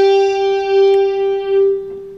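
Electric guitar playing a single held note, G at the eighth fret of the B string, ringing on and slowly fading near the end.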